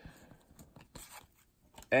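Faint rustling and a few soft taps of cardboard trading cards being handled and set aside.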